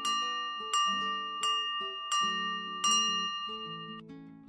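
A bell sound effect, struck five times at an even pace of about two-thirds of a second, with its ringing tones held between strikes. It sits over background acoustic guitar music.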